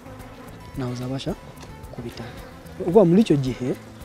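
Honeybees buzzing steadily around wooden box hives, under a man's speech in two short phrases.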